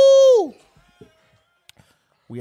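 A loud held note at one steady pitch, rich in overtones, that slides down and dies away about half a second in. Two faint clicks follow.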